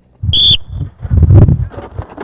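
A short, sharp coach's whistle blast on a football practice field about a quarter second in, followed by a louder stretch of low, dull rumbling noise from the practice.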